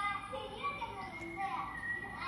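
Children's voices talking and calling out in high, bending tones, on old home-video audio played back through a laptop's speaker.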